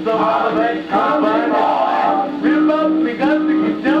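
A 1940s swing big-band record playing on a Califone record player: a male voice sings over the band's held notes.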